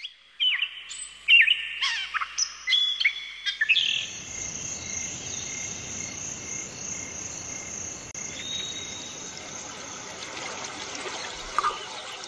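Outdoor nature ambience: birds chirp and call in quick, sliding notes for the first few seconds. Then a steady high drone with a regular pulse, like insects, carries on over an even hiss.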